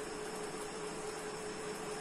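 Steady background hiss with a faint, steady hum: room tone, with no distinct paper sounds standing out.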